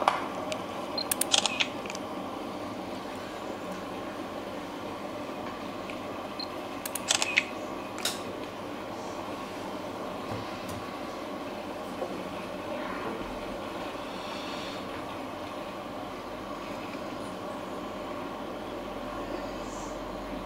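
Camera shutters clicking in a few scattered bursts over a steady hall hum as a new phone is held up for photographs.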